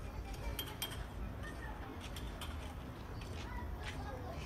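Outdoor street ambience: a low steady rumble with faint distant voices and a scattering of light, sharp clicks.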